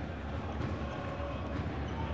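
Basketball arena ambience: a steady murmur of the crowd in the gym, with a few faint knocks of a basketball dribbled on the hardwood court.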